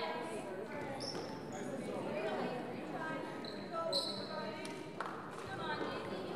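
Indoor volleyball play in an echoing gym: a volleyball knocking and short high squeaks on the court floor, with players' and onlookers' voices in the background.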